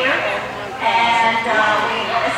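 A dog giving high-pitched whining yips, one drawn out for most of a second, over crowd chatter in a large hall.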